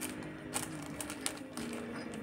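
Irregular small clicks and taps as wires and terminal connections are handled at an electric motor's terminal box.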